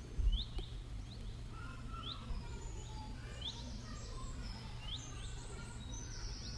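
Faint steady low background rumble with a bird chirping in the distance: short rising chirps repeated about every second and a half, sometimes two in quick succession.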